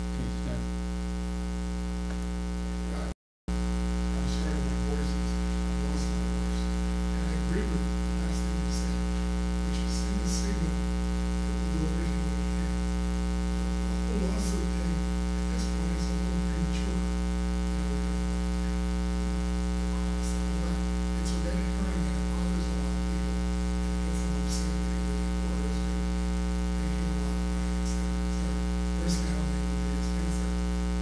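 Steady electrical mains hum with a buzz of many overtones, picked up by the meeting's microphone and recording chain, with faint small clicks and rustles now and then. The sound cuts out completely for a moment about three seconds in.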